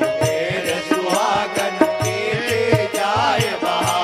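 Indian devotional bhajan music. Sustained steady tones carry a melody line that bends and wavers, over a quick, regular drum rhythm.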